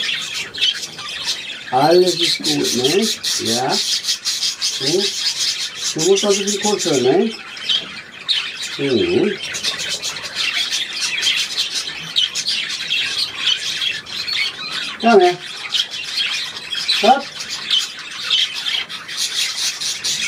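A flock of budgerigars chattering and warbling continuously, a dense mix of high chirps, squawks and clicks.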